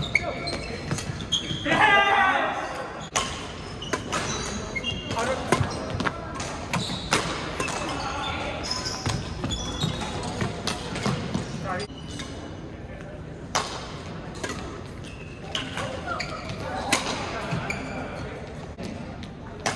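Badminton rackets striking a shuttlecock during a doubles rally: sharp, echoing hits every second or so in a large gym, mixed with voices.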